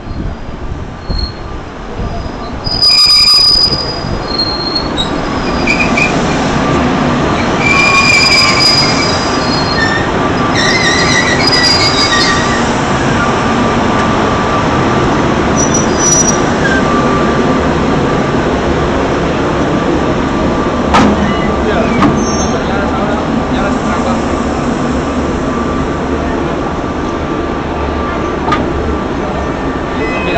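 Renfe class 269 electric locomotive rolling slowly past at close range while shunting, with a steady running rumble and hum. High wheel squeal comes and goes over the first half, and there is a loud short burst about three seconds in.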